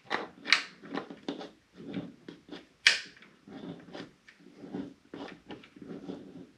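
Irregular small clicks and rustling as hands handle stranded hook-up wire and a small plastic USB power module, working the wire ends into its terminal block.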